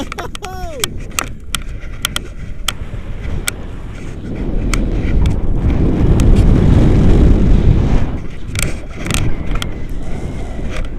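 Wind buffeting an action camera's microphone during a tandem paraglider flight: a loud low rumble that swells between about five and eight seconds in, with scattered short clicks. A brief falling voice sound comes in the first second.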